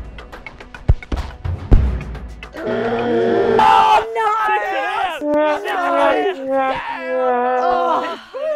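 A thud about a second in, then a loud sharp whack as the Australian rules football is hit high over the fence, followed by excited shouting and cheering.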